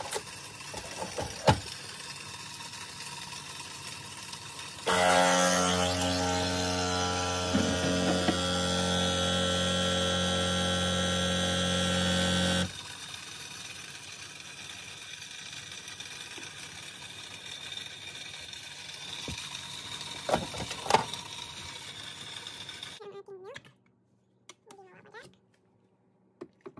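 Nespresso capsule machine's pump running with a steady hum for about eight seconds while it brews an espresso from a capsule. There is a click shortly before it and a couple of clicks some seconds after it stops.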